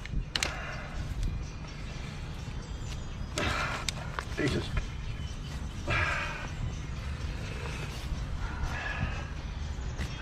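Brief snatches of quiet speech over a steady low outdoor rumble, with a few small clicks.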